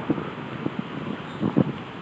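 Wind buffeting a handheld phone microphone over low, steady outdoor street background noise, with a couple of faint knocks from handling or footsteps.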